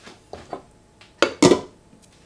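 Spoons knocking against a small stainless steel saucepan of quinoa: two soft knocks, then two louder metallic clinks with a short ring just over a second in.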